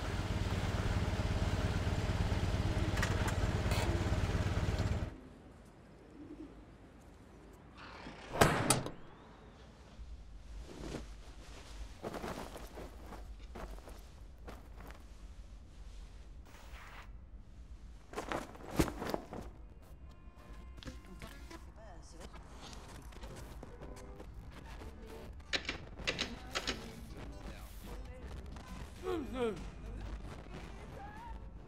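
Film sound effects: a loud, steady rumble with a low hum cuts off suddenly about five seconds in. After it, a quiet room is broken by scattered thumps and knocks, the loudest about eight and nineteen seconds in. A single spoken "No." comes right at the end.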